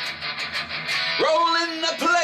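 Heavy metal cover song: an electric guitar riff plays, and a male voice comes in singing a little over a second in.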